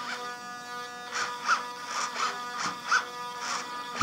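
Digital metal-gear RC servos buzzing steadily as they hold position, with about five or six short whirring bursts as the elevons are driven back and forth from the transmitter sticks. The servos are now moving the control surfaces in the correct direction.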